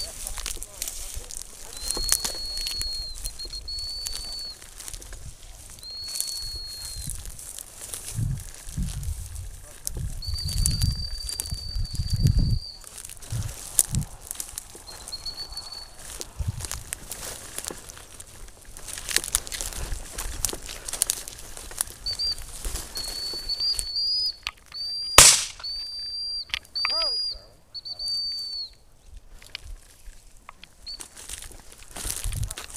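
A handler's dog whistle blowing single steady blasts at intervals, then a run of short blasts. A single loud bang comes about 25 seconds in.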